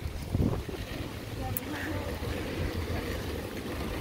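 Wind rumbling on the microphone outdoors, with faint street background and a brief bit of voice about half a second in.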